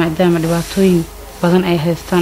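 A person's voice in short, evenly pitched phrases with brief pauses between them.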